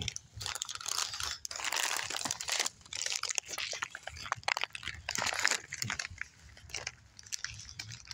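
Irregular crunching and crinkling close to the microphone: a crunchy snack being chewed and its packet handled.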